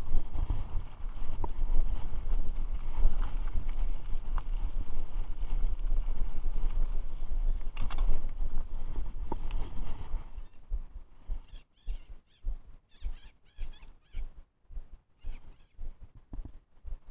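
Wind rumble on the microphone and the rattle of a mountain bike riding a dirt trail, with a few sharp clicks. About ten seconds in the riding noise stops and only quieter, uneven pulses of sound remain.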